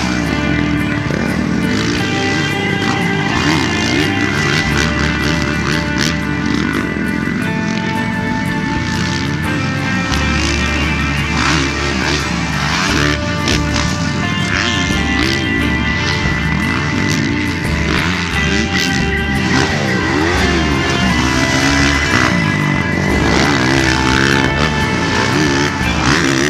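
Background music with a steady beat, mixed with a Kawasaki motocross bike's engine revving up and down repeatedly as it is ridden around a dirt track.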